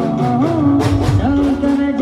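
Loud live garba music through a sound system: a man singing into a microphone over a band with a steady beat.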